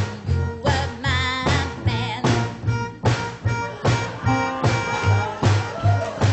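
A live band playing an upbeat song with a steady beat of about two hits a second over a repeating bass line. About a second in, a wavering high lead line enters.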